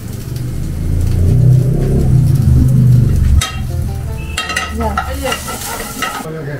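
Cubed bell peppers and onion sizzling in a frying pan over a gas flame, stirred with a wooden spatula that scrapes the pan in a few strokes in the second half. A loud low rumble fills the first three and a half seconds and cuts off suddenly.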